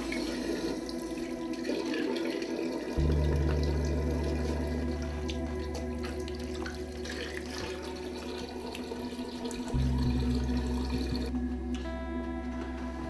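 Water running from a bathroom tap into a sink as hands are washed under it. A low droning music score comes in suddenly about three seconds in and shifts to a new tone near the end.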